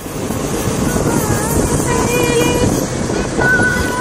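Steady engine, road and wind noise from a vehicle driving along a winding road, setting in suddenly at the start.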